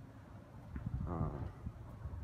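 Soft footsteps on paving and phone handling noise as the camera is carried around the car, over a steady low hum, with a brief spoken "uh" about a second in.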